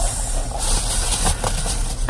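Steady low rumble inside a car's cabin, typical of the engine idling, with a soft rustle of a jacket sleeve in the middle.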